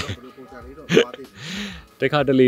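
A man's short laugh: a couple of quick vocal bursts, then a breathy exhale with a brief hum.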